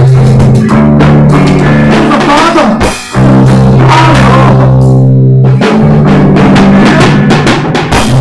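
Loud rock jam on electric bass guitar and drum kit: held bass notes over steady drum beats. About three seconds in the band drops out for a moment, then crashes back in together.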